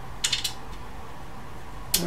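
Small metal hex keys clicking against each other and against metal as they are handled, a quick run of three or four light clicks about a quarter second in, then one sharp click near the end as a key meets the screw on the back panel.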